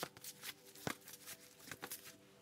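Tarot cards being handled: a few faint, light card flicks and taps.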